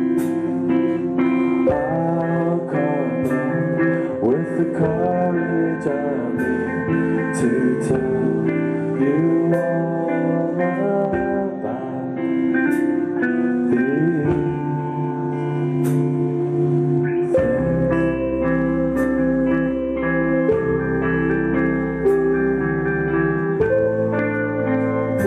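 Rock band playing an instrumental passage without vocals: electric guitars over drums with regular cymbal hits, a guitar line gliding up and down in pitch. About two-thirds of the way through, a heavier low bass comes in.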